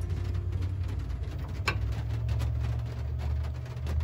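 Mr. Heater Portable Buddy propane heater burning, a steady low rumble with faint ticks and one sharp click about 1.7 s in.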